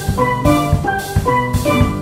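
Steelpan music: bright, short pitched pan notes played over a drum kit keeping a steady beat.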